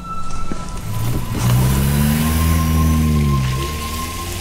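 Car engine accelerating as the car drives off, its pitch rising and then falling away, over a steady rush of road noise.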